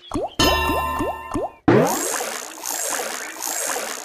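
Big Bass Amazon Xtreme online slot game sound effects over its music during a free spin. A run of quick rising sweeps plays while the reels spin. About halfway through comes a sudden watery, bubbling burst, and it carries on to the end.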